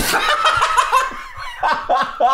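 Two men laughing hard in a run of short bursts.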